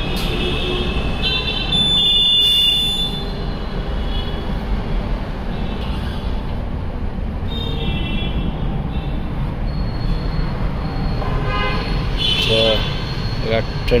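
Steady rumble of street traffic with several short, high-pitched horn toots a few seconds apart.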